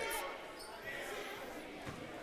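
A basketball bouncing once on a hardwood gym floor near the end, over the low murmur of a large gymnasium.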